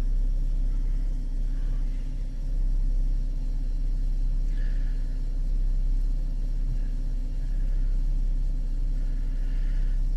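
2013 Chevrolet Camaro's engine idling steadily, heard from inside the cabin as a low, even hum.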